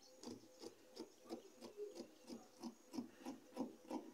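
Scissors snipping through folded satin fabric, a faint short snip about three times a second.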